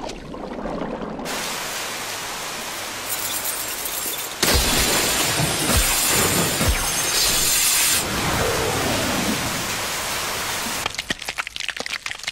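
Animated battle sound effects: a dense rushing crash with splashing that grows louder about four seconds in and eases a few seconds later, then a brief crackling near the end.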